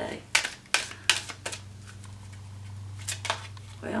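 A deck of oracle cards being shuffled by hand, in an awkward, halting shuffle: sharp snaps of cards slapping together about four times in the first second and a half, then twice more near the end.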